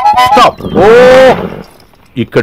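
Film background music breaks off about half a second in, then a horse neighs once: a single loud call under a second long that rises and falls in pitch.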